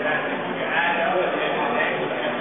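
A person's voice, without clear words, with pitch that wavers up and down, over steady gym room noise.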